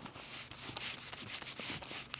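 Folded paper towel rubbed in repeated strokes over an alligator-embossed cowhide belt strip, wiping the excess gel antique finish off the surface.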